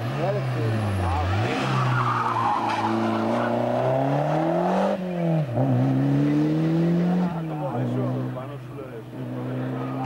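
Rally car engine at hard throttle through a corner: the pitch drops about a second in, climbs steeply, breaks sharply about halfway through at an upshift, and climbs again as the car accelerates away.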